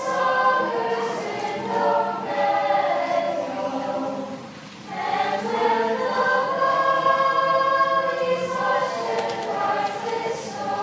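Eighth-grade choir of girls' and boys' voices singing in held phrases. The singing briefly softens about four and a half seconds in, at a break between phrases, then comes back at full strength.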